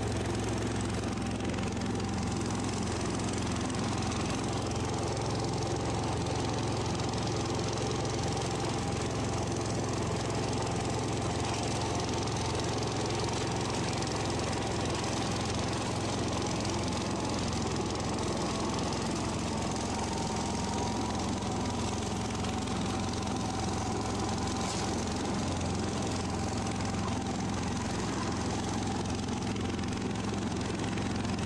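John Deere 140 garden tractor's engine running steadily while the tractor drives and mows with its deck lowered, an even unbroken engine note with no change in speed.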